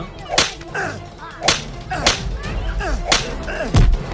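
Four sharp whip-like blows landing a second or so apart, each followed by a short vocal cry, as in a film beating scene; a heavy low thump comes near the end.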